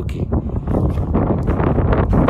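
Wind buffeting a phone's microphone, a heavy, uneven low rumble.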